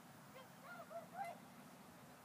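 Faint bird calls: a quick series of about four short calls, each rising and falling in pitch, starting about half a second in, over faint low background noise.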